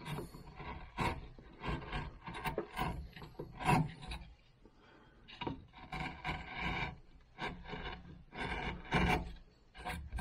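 Hand carving chisel shaving cottonwood bark: a run of short, scraping cuts with brief pauses between them.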